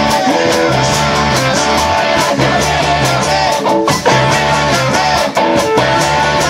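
Live band playing an instrumental passage: a lead guitar line with bent notes over guitar chords, bass and a steady drum beat with cymbal hits.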